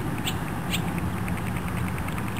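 Birds calling in short, rapid chirps, several a second, a few of them louder, over a steady low background noise.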